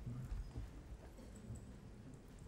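A hushed hall with faint rustling and a low rumble, and no clapping: a large audience answering with silent hand-waving applause, the deaf form of applause.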